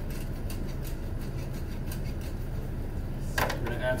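Wooden pepper mill twisted by hand over a metal bowl, grinding peppercorns with faint, irregular crackling clicks. Under it is a steady low hum.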